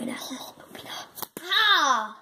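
A person's voice speaking a character line, then two short clicks, then a drawn-out falling cry from the same kind of voice near the end.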